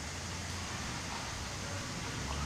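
Steady low background rumble and hiss of outdoor ambience, with a faint low hum and no distinct events.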